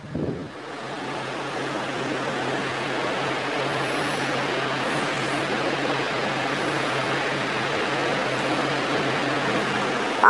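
A steady rushing noise with a low hum underneath, swelling up over the first second and then holding level, like distant road traffic.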